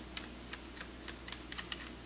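Barrel nut of a Mossberg 500 pump shotgun being unscrewed by hand from the end of the magazine tube: a run of faint, irregular light clicks, about five a second.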